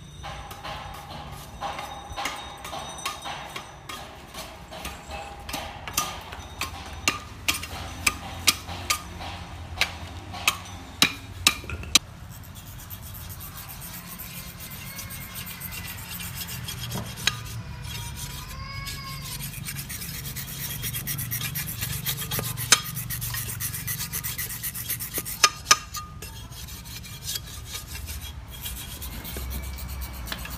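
About a dozen sharp knocks of a knife chopping and splitting bamboo in the first half. After that come steady scraping and rubbing, as something is ground on a sharpening stone and bamboo strips are shaved with a knife, with a few more knocks near the end.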